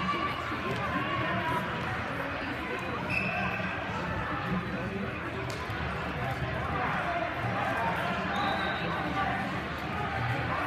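Many people talking at once in a large hall, a steady murmur of overlapping voices with dull low thumps underneath.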